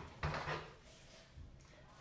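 Scissors picked up off a tabletop and brought to a paper cup: a brief clack just after the start, then quiet handling.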